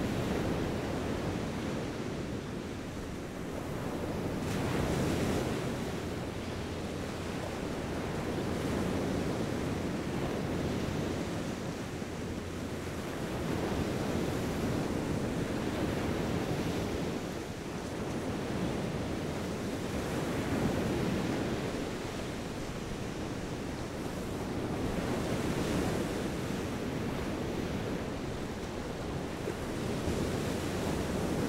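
Ocean surf washing onto a sandy beach, a steady rush that swells and eases every several seconds, with wind buffeting the microphone.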